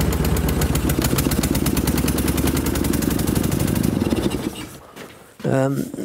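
Flat-twin engine of a 1957 Soviet sidecar motorcycle, a copy of a wartime BMW, running steadily with a rapid, even firing beat, then dropping away about four and a half seconds in.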